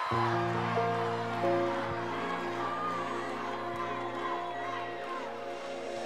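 Instrumental opening of a song played live: sustained chords come in just after the start, with more notes joining over the next second or so. A large crowd cheers and screams over the music.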